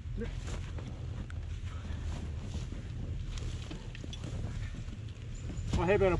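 Low steady rumble with faint scuffs and rustles as riders haul a fallen adventure motorcycle upright on a muddy slope. Voices come in just before the end.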